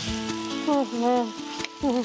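Ripe tamarind sizzling in hot oil in a non-stick wok as it is stirred with a wooden spatula, heard over background music with held notes.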